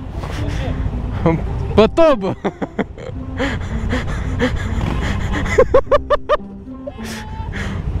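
Motorcycles idling at a standstill in traffic, a steady low rumble under voices and music.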